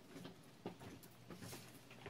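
Faint, scattered soft clicks of folded origami paper being handled and pressed together, over quiet room tone.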